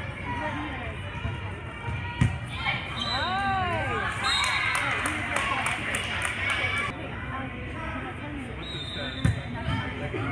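Volleyball being hit in a gym rally: a sharp smack about two seconds in and another near the end, the loudest sounds. Around them, girls' shouts and spectator voices, with a burst of high shouting about three to four seconds in.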